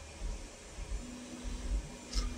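Quiet room tone: a faint hiss with an irregular low rumble, and a faint steady hum that comes in about a second in.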